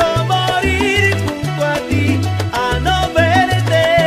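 Salsa music: a syncopated bass line stepping between notes under melodic lines, with a steady run of percussion hits.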